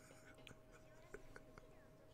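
Near silence: faint room tone with a steady faint hum and a few faint clicks.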